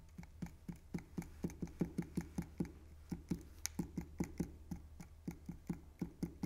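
Fine-tip plastic glue bottle tapping on cardstock as glue is dabbed on in little dots: a quick, even run of light ticks, about five a second.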